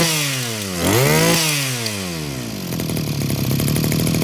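Zenoah GE2KC brush cutter's small two-stroke engine revved up and down twice, its pitch rising and falling, then settling to a steady idle a little under three seconds in.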